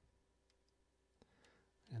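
Near silence, with a few faint, brief clicks from handling a Zoom H2n handheld recorder.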